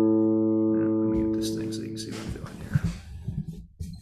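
Open A string of a hollow-body electric guitar ringing and slowly fading, then damped a little over two seconds in. Soft clicks and low thumps of hands on the strings and guitar follow.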